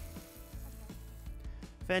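Garden hose spray nozzle hissing as water sprays onto soil, stopping about a second and a half in, over soft background music.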